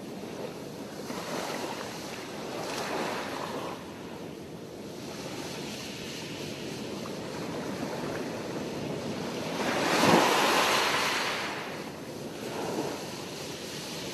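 Sea surf: waves breaking and washing up the shore in slow swells, the loudest about ten seconds in.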